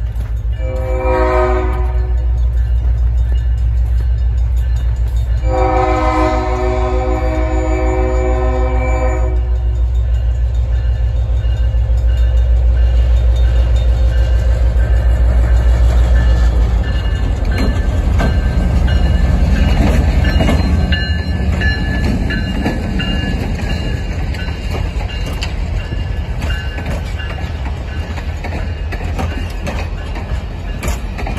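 Diesel locomotive approaching and passing close by, sounding its multi-note air horn in a short blast and then a long blast of about four seconds over the engine's low rumble. From about halfway through, the passenger cars roll past with wheels clicking over the rail joints.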